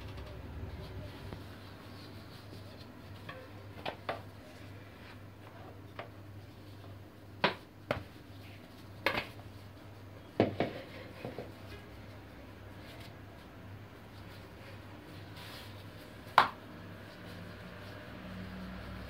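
Quiet kitchen with a low steady hum, broken by a handful of short, light knocks and clicks from handling things on the counter, the sharpest about seven and a half seconds in and near the end.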